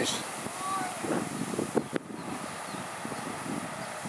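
Wind buffeting the microphone outdoors, a steady noisy rush, with a single sharp click about two seconds in.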